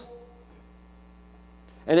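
Faint, steady electrical mains hum in a pause in a man's speech. His voice trails off at the start and comes back near the end.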